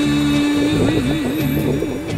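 Background song: a singer holds one long note, steady at first and then in wide vibrato from about a second in, over the song's accompaniment.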